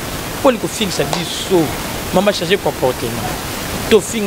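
A person talking in short phrases over a steady background hiss.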